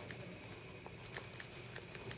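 Faint room tone with a few light clicks and taps from fingers handling a plastic skull model.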